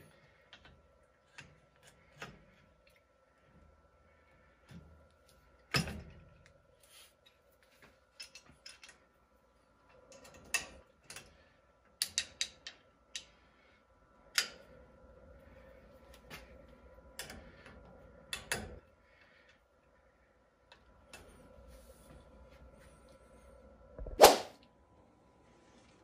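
Power feed unit being handled and fitted onto the end of a milling machine table: scattered clicks and light knocks of its housing against the table bracket, a sharper knock about six seconds in and the loudest clunk near the end.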